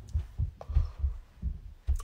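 Makeup brush being worked against the skin while blending contour, heard as soft, low thumps in quick, irregular succession, about five a second.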